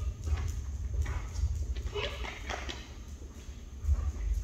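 Footsteps of a person in boots and a large dog walking together across a bare concrete floor, a light run of steps over a steady low hum.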